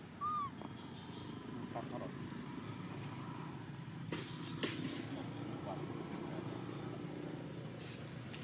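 A single short, arched squeak from an infant macaque just after the start, over a steady low background rumble, with two faint clicks about four and a half seconds in.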